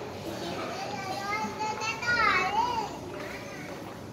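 A young child's high voice, calling or babbling with no clear words, sliding up and down in pitch and loudest a little after two seconds in.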